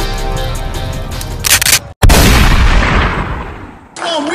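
Intro music with held chords, broken about a second and a half in by a short whoosh, a brief dropout, then a heavy cinematic boom that rings out and fades away over about two seconds.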